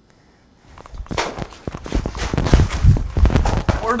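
A fast, irregular run of loud knocks and thumps, starting about a second in.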